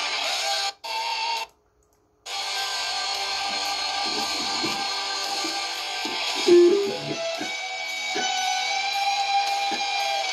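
Electric guitar lead solo played at three-quarter speed along with music playback of the song slowed to match. Two short bursts of music come first, then a brief break, and the music runs steadily from about two seconds in.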